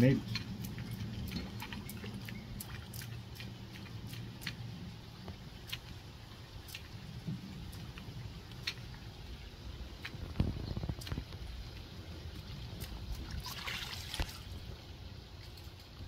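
Two-piece wooden topwater lure walked back and forth on the water surface: soft, irregular splashing and gurgling with scattered sharp clicks, and a louder splash about fourteen seconds in.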